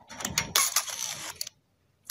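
A run of sharp clicks and rattling mechanical noise lasting about a second and a half, cutting off suddenly.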